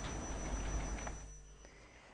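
Faint background hiss and low hum that fade away over the second half, leaving near silence.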